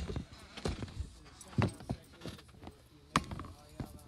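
Irregular knocks and bumps of a phone being handled and moved by hand, about half a dozen in a few seconds, with low voices underneath.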